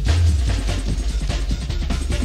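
Early-1990s rave music from a live DJ mix: a busy, fast drum pattern over a deep bass note that hits in the first half-second.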